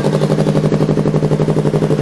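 Yamaha R3's parallel-twin engine idling steadily through an SC Project aftermarket exhaust, with a fast, even exhaust pulse.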